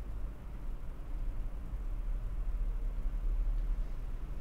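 A steady low hum with faint background noise underneath.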